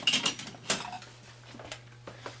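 Objects being handled: several sharp clinks and rattles in the first second, the loudest a little under a second in, then a few quieter ticks and rustles.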